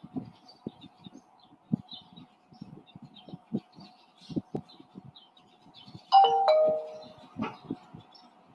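A two-note descending chime, a ding-dong like a doorbell, sounds about six seconds in and is the loudest thing heard. Faint bird chirps, a steady hum and soft low knocks run underneath.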